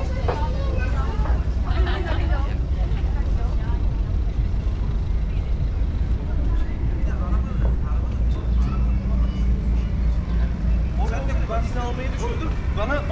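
City street ambience beside a busy road: a steady low traffic rumble, with snatches of passers-by talking in the first few seconds and again near the end.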